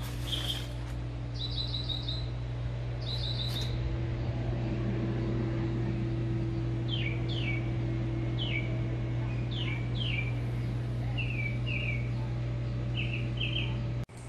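Songbirds calling: quick groups of high chirps at first, then a run of downward-slurred whistled notes and more short chirps, over a steady low mechanical hum.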